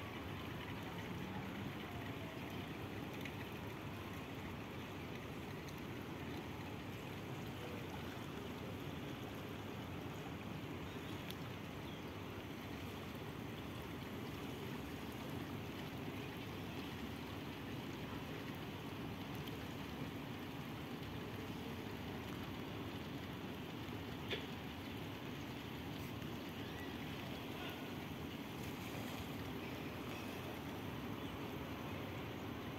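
A river in flood, its fast water rushing steadily, with a single brief click late on.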